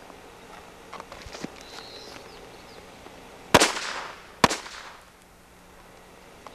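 Firecrackers going off: a few faint pops and crackles, then two loud, sharp bangs about a second apart.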